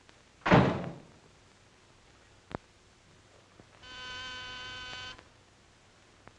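A door shuts with a heavy thud about half a second in, followed by a small click. Near four seconds a telephone rings once, a steady ring lasting just over a second.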